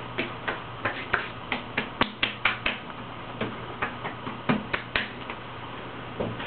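Bare palms slapping the freshly shaved face and neck: about fifteen quick, light skin slaps in an uneven run, with a short pause near the middle.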